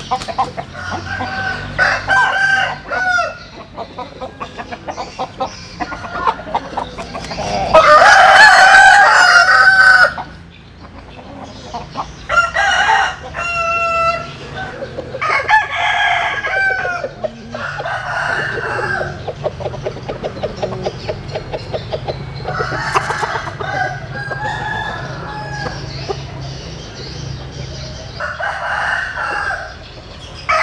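Roosters crowing several times, the loudest crow coming about eight seconds in and lasting about two seconds, with shorter calls and clucking between the crows.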